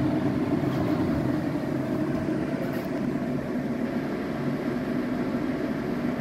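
Range hood's twin blower fans running on high, a steady whir with a low hum. The hood draws far less power than two full-speed motors should, and the owner believes both motors are not running fully.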